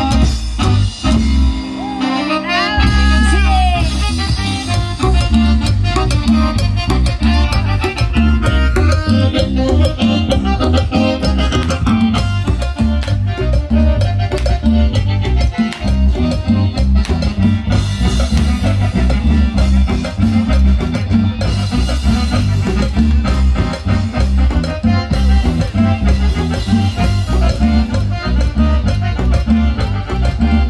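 Live band playing an upbeat Mexican chilena through PA speakers, with electric guitar, drum kit and bass and a steady beat. A brief high sliding note wavers over the music about two seconds in.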